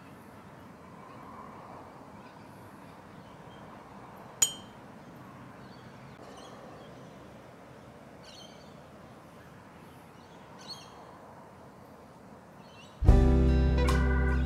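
Quiet outdoor ambience with faint bird chirps, broken by one sharp metallic clink about four seconds in. Near the end a loud, steady buzzing electronic tone starts abruptly.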